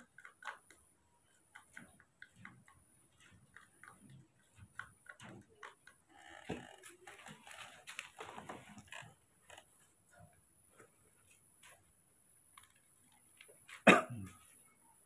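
Metal spoon stirring and scraping porridge in a small plastic bowl, making scattered light ticks and clicks, with a stretch of rustling handling in the middle. One sharp knock near the end is the loudest sound.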